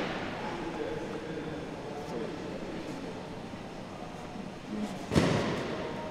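Low murmur of onlookers' voices in a gym, with one short, loud thud-like burst about five seconds in.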